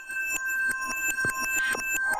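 Electronic sound-effect texture: a few held high tones with many quick clicks scattered through them.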